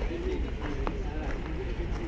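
Indistinct chatter of people talking nearby, over a steady low rumble on the microphone, with one sharp click a little under a second in.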